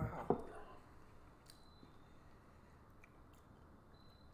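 A brief voiced exclamation and a sharp lip smack as a sip of beer is tasted, then faint room tone.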